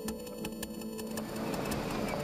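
Laptop keyboard keys clicking in quick, fairly even typing, about five or six clicks a second, over a low steady musical drone. A little past halfway the clicking stops and a broader hiss of street ambience takes over.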